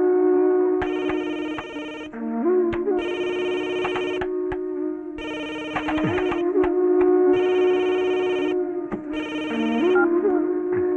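Mobile phone ringtone playing a short electronic melody that repeats about every two seconds.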